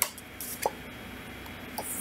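Tarot cards being handled as a card is drawn from the deck: a few faint clicks and ticks, the sharpest right at the start.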